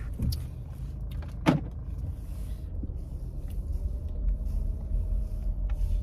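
Car heater blower running loud inside the car cabin over a steady low rumble, its faint hum rising slightly in pitch partway through. A single brief sharp sound about a second and a half in.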